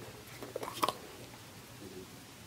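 A few brief crinkles and clicks of plastic being handled, the sharpest just under a second in, over a faint steady background.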